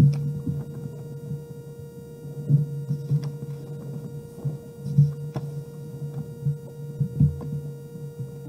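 Steady electrical hum under low, muffled sounds that rise and fall, with a few faint clicks.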